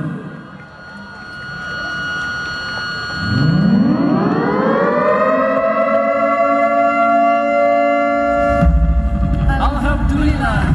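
Ceremonial siren set off by a button press, winding up in pitch from low to a steady high wail about three seconds in and holding it for several seconds, sounding the official closing of the event. A deep low rumble joins near the end.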